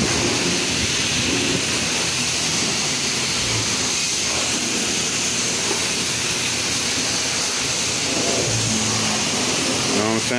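Steady hiss of water from a self-serve car wash's high-pressure spray wand, rinsing a pickup truck's wheel and side panels.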